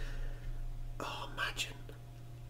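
Faint whispered breath sounds from a man between remarks, about a second in and again shortly after, over a steady low hum.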